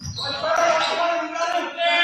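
Live basketball game in a school gym: players' calls and high sneaker squeaks on the hardwood court, echoing in the large hall.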